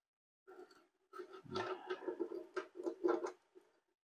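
Steel roller chain handled over a sprocket and frame, its links clicking and rattling in a run of irregular light clicks that starts about a second in.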